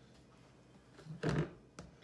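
Quiet room tone, then about a second in a brief scuffing sound and a sharp click near the end as a small saucer of colored sugar is picked up from the counter.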